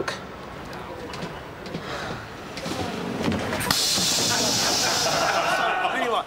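Background music with indistinct chatter of a busy room. About halfway through a loud steady hiss joins in, stopping shortly before the end.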